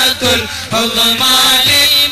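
Islamic devotional chanting: a voice singing a wavering, drawn-out melodic line, with a brief breath-like dip about half a second in.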